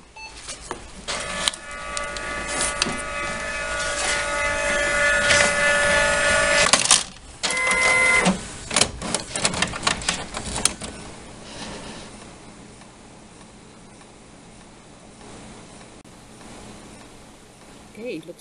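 Canon Pixma MX922 inkjet printer starting up after being powered on, its motors whining and whirring through the start-up routine. A long whine grows louder and cuts off suddenly about seven seconds in. A shorter whir and a run of clicks follow, then the printer settles to a faint hum.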